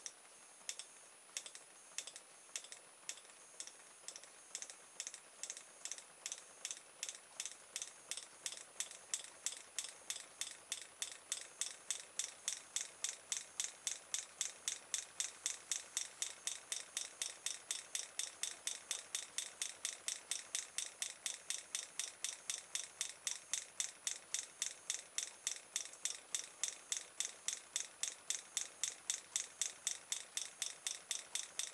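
Open-air reed switch of a homemade pulse motor snapping on and off as the rotor's magnets pass, a sharp regular click that speeds up from about one and a half to about four a second and grows louder as the rotor gains speed. With no flyback diode fitted, the contacts spark on each switch-off from the coil's back-EMF spike.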